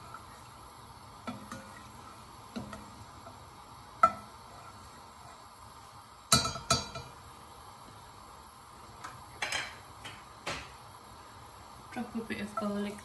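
A spatula knocking and scraping against a stainless steel pot while a little oil heats in it. It gives a few separate clinks, the sharpest about four seconds in and a short cluster just after six seconds.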